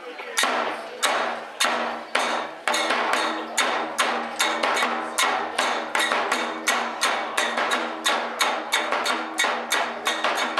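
Kagura hand cymbals clashed in a quickening rhythm: slow strokes at first, then speeding up to three or four clashes a second, each ringing briefly, with the large drum beating along.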